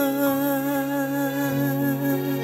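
Closing bars of a Vietnamese pop ballad: a singer holds a long final note with vibrato over sustained backing chords. The voice ends about one and a half seconds in, leaving the chords ringing.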